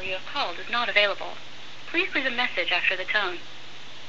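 A recorded voicemail greeting speaking over the phone line, with a faint steady hum underneath.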